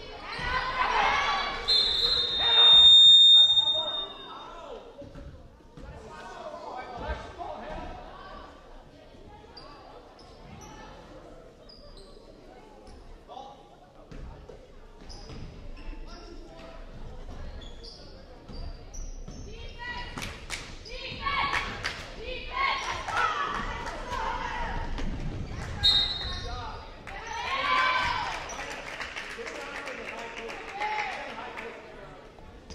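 A basketball dribbling on a hardwood gym floor, with players and spectators shouting in a large hall. A referee's whistle blows for about a second and a half about two seconds in, and briefly again near the end.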